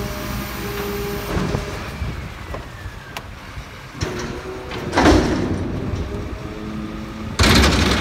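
Front-loading refuse truck's engine and hydraulics running with a steady whine while the raised bin is worked over the cab. A loud crash comes about five seconds in, and a longer, louder clatter near the end as the hopper lid swings open.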